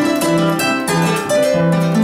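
Peruvian harp being played: a steady stream of plucked melody notes over a repeating plucked bass line.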